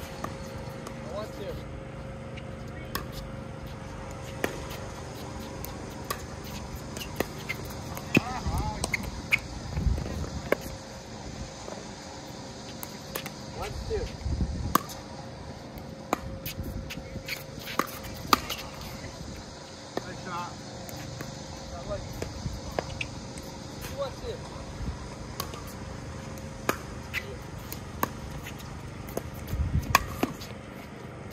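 Pickleball doubles rally: paddles striking a plastic pickleball in sharp, irregular pops, with players' short calls and voices between shots.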